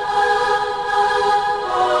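Club DJ set of electronic dance music, here a held, choir-like chord that sustains steadily with no beat underneath.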